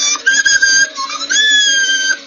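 High-pitched, whistle-like squeaking in two long held notes, the second starting a little past halfway, sounding like a cartoon squeak.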